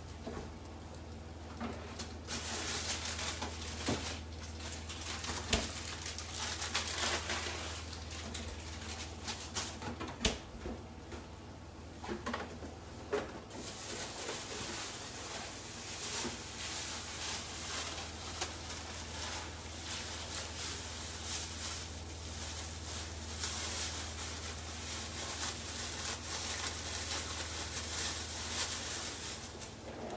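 Spaghetti with prawns sizzling and bubbling in a stainless steel frying pan after a splash of water, a dense steady crackle that eases off briefly a couple of times. A steady low hum runs underneath.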